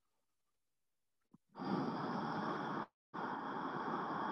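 A woman's deep breath, a long breath in and then a long breath out, starting about a second and a half in, with a brief dropout between the two.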